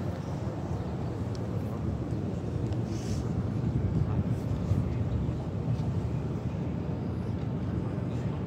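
Outdoor crowd ambience: a steady low rumble with indistinct voices in the background.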